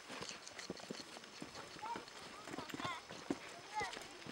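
Faint, uneven footsteps of several people walking on a dirt path, with a few short, high chirping calls in the background.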